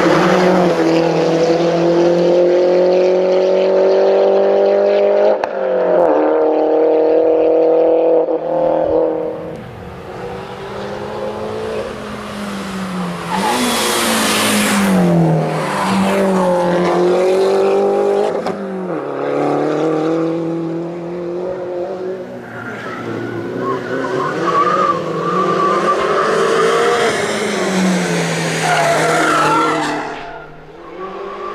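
Mini Cooper S race car's four-cylinder engine at full throttle. The revs climb in each gear and drop sharply at quick upshifts several times, with the engine fading and returning as the car passes on the climb.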